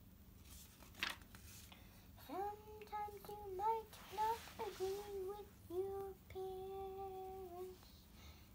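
A child singing a tune in long held notes, starting about two seconds in, with the longest note held near the end. A short papery rustle comes about a second in and again near the middle.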